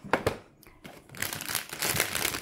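A few light knocks, then a crinkly plastic bag of marshmallows crackling as it is picked up and handled.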